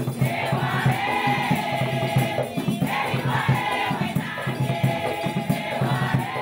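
A women's choir singing together over a steady rhythmic percussion beat.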